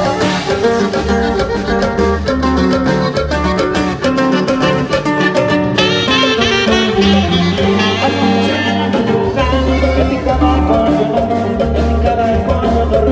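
Live norteño band playing an instrumental passage between sung verses: a saxophone lead over bass, guitar and drums.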